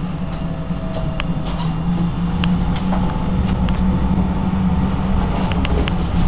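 Interior of an electric tram in motion: a steady low rumble with a faint steady whine and scattered sharp clicks and rattles, growing slightly louder.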